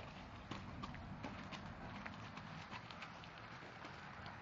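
Horses' hooves striking the ground as two horses are led at a walk: a string of irregular, fairly quiet hoof strikes.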